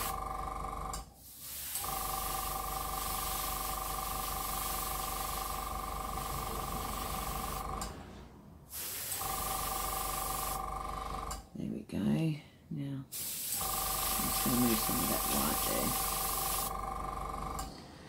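Airbrush compressor running with a steady hum and a hiss of air through the airbrush, set to 30 psi. It cuts off and starts again several times, in four runs of one to six seconds.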